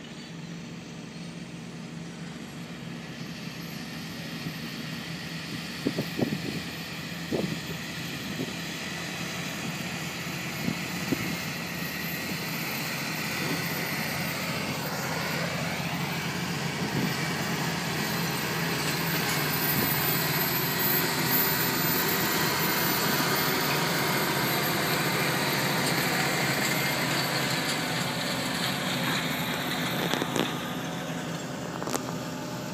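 Fendt 828 Vario tractor's six-cylinder diesel engine working under load as it pulls a five-furrow Kverneland reversible plough through the soil, growing steadily louder as the tractor comes closer. A few sharp knocks sound about six and seven seconds in.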